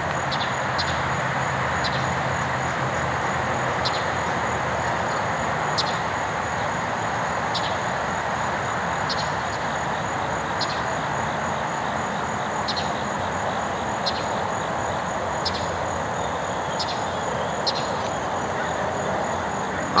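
Steady rushing background noise, with short faint high chirps recurring every second or two.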